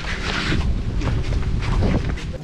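Wind buffeting the microphone: a loud, gusty rumble with no clear pitch.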